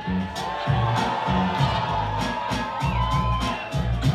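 Hip-hop beat played by a DJ through a concert PA, a heavy repeating bass line and kick drum under crisp drum hits.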